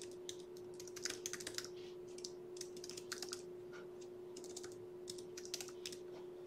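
Faint typing on a computer keyboard: quick runs of keystroke clicks in three or four short bursts as two short words are entered, over a steady hum.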